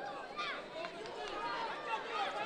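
Spectators in an arena calling out, many voices overlapping in short shouts.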